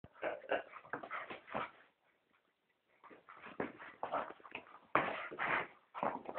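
An English Cocker Spaniel vocalising in short, irregular bursts while play-wrestling with a cat, with a pause of about a second roughly two seconds in.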